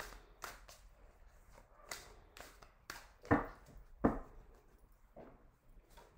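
A tarot deck being shuffled and handled: scattered soft slaps and taps of cards, with two sharper knocks about three and four seconds in.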